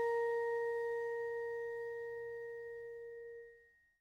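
The last note of the closing music: a single bell-like chime, struck just before, ringing on as a pure steady tone that slowly dies away, then fades out quickly shortly before the end.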